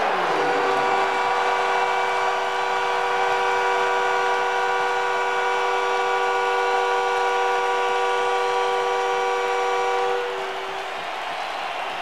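Arena horn sounding one long steady multi-tone chord for about ten seconds, cutting off near the end, over a loud arena crowd cheering the MVP announcement.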